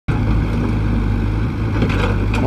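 Komatsu PC75UU mini excavator's diesel engine running steadily while the machine digs.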